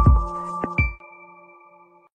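Short electronic logo jingle: a few quick percussive hits in the first second over several held synth tones, which ring on and fade away.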